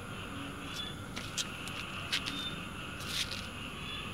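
Steady high-pitched chirring of night insects, with a few short, sharp clicks.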